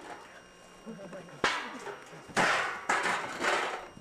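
One sharp hit about a second and a half in, a wrestling chair shot landing, followed by loud laughing and exclaiming from onlookers.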